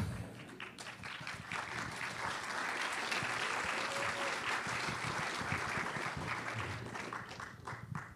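Audience applauding, swelling to a full peak around the middle and thinning out to a few scattered claps near the end.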